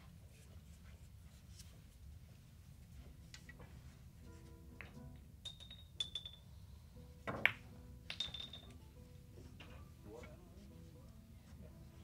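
Carom billiard balls clicking sharply against each other and against the wooden pins during a five-pin shot, a quick series of clicks over a few seconds with the loudest about seven seconds in, some ringing briefly.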